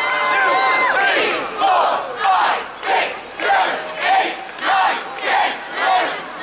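Crowd of spectators shouting together: one long held cry, then short shouts in a steady rhythm, about three every two seconds.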